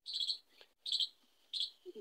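A small bird chirping: three short, high chirps, about one every 0.7 seconds, quieter than the voice around them.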